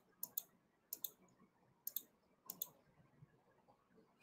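Faint, sharp clicks in close pairs, about four pairs roughly a second apart, like a computer mouse or keyboard being used at the microphone.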